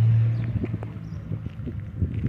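Footsteps on the gravel ballast beside a railway track: a run of short, irregular crunches. A low steady hum opens it and fades within about half a second.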